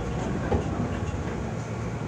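Seoul Subway Line 2 train running past a station platform, heard from inside the car: a steady rumble of wheels and running gear, with a single wheel click about half a second in.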